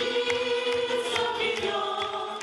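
Many voices singing together in chorus, holding a long sustained note over accompanying music.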